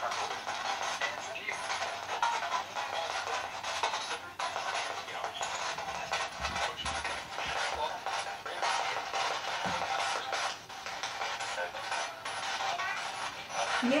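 Spirit box sweeping through radio stations: choppy, steady static chopped into short bursts, with broken snatches of broadcast sound.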